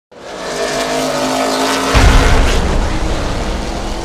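Intro sound effect of a race car engine running at high revs, hit by a sudden deep boom about two seconds in, the loudest moment, which then slowly fades.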